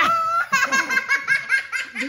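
Young children laughing hard: a high squeal, then a rapid run of ha-ha-ha pulses, about seven a second.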